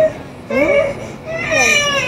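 A young child's fussy, whimpering vocal sounds, a couple of short calls that glide up and down in pitch.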